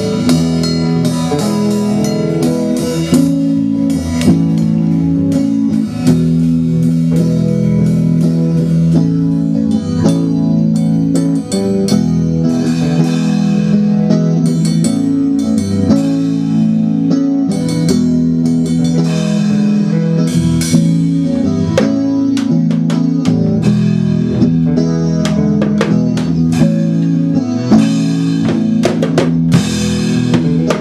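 Electric guitar and drum kit jamming together in a loose improvisation, with drum hits and cymbal strikes growing more prominent in the later part.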